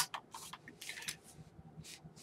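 Faint scraping and a few light clicks of a detachable magazine being slid into an SKS rifle's magazine well with the bolt held open.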